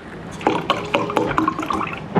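Orange juice poured from a carton into a plastic cup, splashing in an uneven, spluttering stream as the cup fills.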